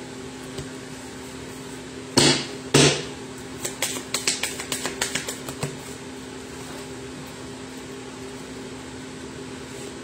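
A deck of tarot cards handled and shuffled by hand: two loud slaps of the deck about two seconds in, then a quick run of small card flicks for about two seconds. A steady low hum runs underneath.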